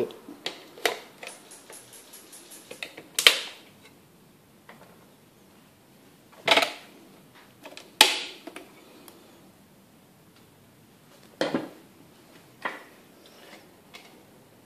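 Handling noise from aluminium tracking gauge bars as plugs are pulled from them: a handful of separate sharp clicks and knocks, the loudest about three, six and a half and eight seconds in. A quick run of faint high ticks comes between one and three seconds in.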